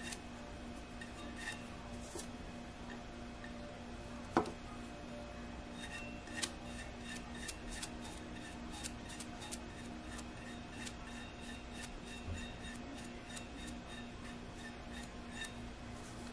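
Faint scattered clicks and light taps of a paintbrush working alcohol ink over a skinny tumbler, with one sharper tap about four seconds in and the clicks coming thicker in the second half, over a low steady hum.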